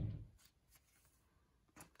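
Quiet room tone with a few faint, brief taps and rustles from things being handled and set down on a tabletop, one near the end.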